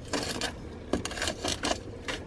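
Metal-bladed hand tool digging into potting soil in a plastic seed-cell tray to lift out a seedling: a run of about five short scrapes and crunches.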